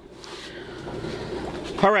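Aquarium air bubbling and filter water noise, an even rushing and gurgling that grows louder.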